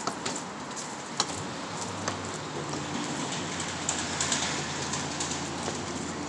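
Steady street noise, with a few sharp clicks in the first second or so and a low hum coming in about a second and a half in.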